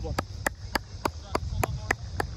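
Steady rhythmic hand clapping, about three and a half sharp claps a second, from a sideline spectator cheering a team on.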